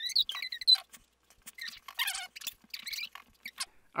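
Fast-forwarded audio: high, chipmunk-like squeaks of sped-up voices, then many quick scratchy strokes and ticks of a Sharpie marker drawing short tread marks on paper.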